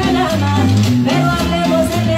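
A live cumbia band playing loudly, with a stepping bass line repeating under percussion and melody.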